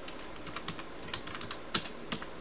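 Typing on a computer keyboard: several irregular key clicks spread over two seconds.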